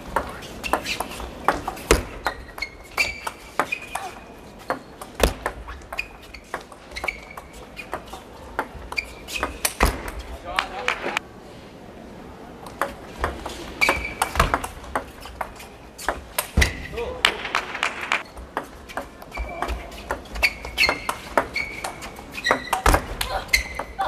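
Table tennis rallies: the ball clicking sharply off bats and table in quick runs of strikes, with a short lull between points about halfway through.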